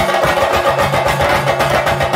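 Chenda drums beaten rapidly with sticks in a dense, fast rhythm, the drumming that accompanies a theyyam dance, with a steady held tone underneath.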